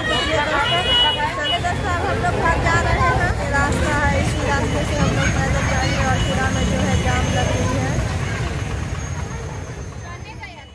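Hubbub of many people talking at once, with motor traffic rumbling underneath: motorcycles and a three-wheeler auto-rickshaw passing on the street. The sound fades away near the end.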